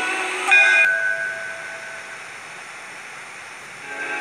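Held notes at the end of a radio programme jingle, fading out over about two seconds and leaving a steady hiss.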